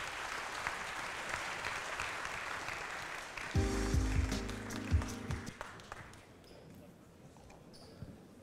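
Audience applauding in a hall, dying away about six seconds in. About halfway through, a short run of low held tones and a few thumps sounds under the clapping.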